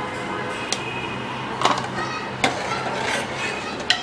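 A steel spoon clinks against a cooking pot four times, in sharp single taps, as salt is added and stirred in. Under it runs a steady low hum.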